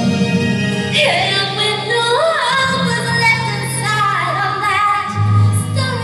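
A woman singing live into a handheld microphone, a slow ballad melody with wavering, gliding held notes, over sustained low accompaniment chords.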